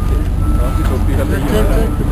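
Several people talking indistinctly over a loud, steady low rumble.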